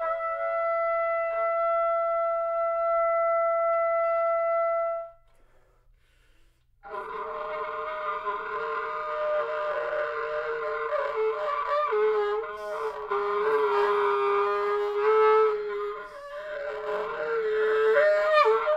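Solo trumpet playing one long held note for about five seconds, which stops for a pause of a couple of seconds. It then comes back with a rougher, noisier sustained passage of held and bending tones.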